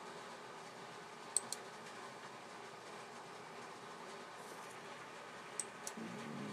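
Faint steady room hiss broken by two quick pairs of light computer mouse clicks, one pair about a second and a half in and another near the end.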